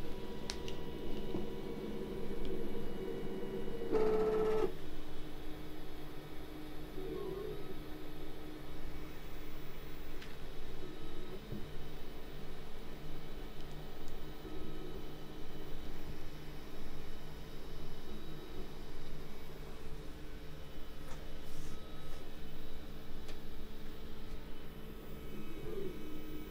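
Panospace FDM 3D printer running as it lays down its first layer, a raft: the stepper motors whine in several steady tones that shift as the print head changes moves. There is a short louder, higher whine about four seconds in.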